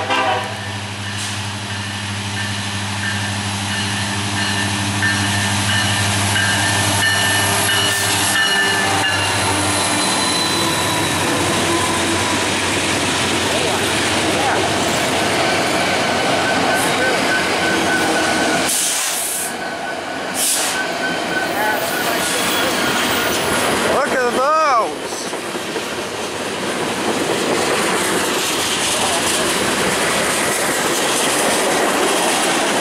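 Norfolk Southern freight train passing close by. A lashup of diesel-electric locomotives drones low and steady for the first nine or ten seconds, then gives way to the rumble and clatter of loaded tank cars rolling past on the rails.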